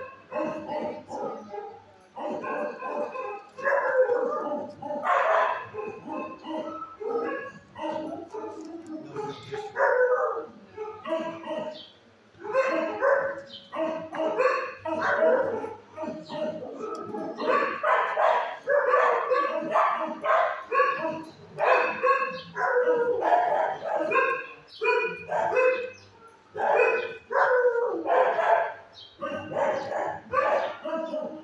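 Several dogs barking over and over in a shelter kennel, a near-continuous run of short barks with only brief pauses.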